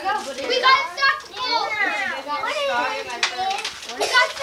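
Several children's high-pitched voices talking and calling out over one another, with no clear words.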